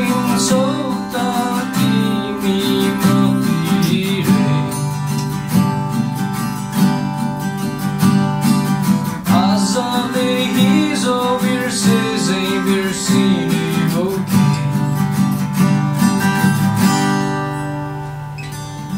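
A man singing a Nepali song over two strummed steel-string acoustic guitars. The vocal line comes in two phrases, the second starting about nine seconds in, and the guitars carry on alone near the end.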